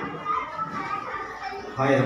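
Many young children's voices chattering and calling out together in a hall that echoes, with a louder single voice near the end.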